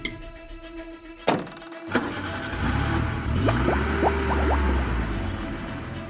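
Background music, then from about two seconds in a dubbed truck engine sound effect running, its low hum rising and falling.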